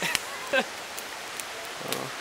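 Campfire of damp, mossy branches burning, with a steady hiss and a few sharp crackling pops. A short voice sound rises about half a second in.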